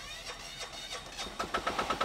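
Dustquip Jetmister JM35's onboard diesel engine starting up by remote control, a rapid even chugging of about ten beats a second that grows louder in the last half second as it catches.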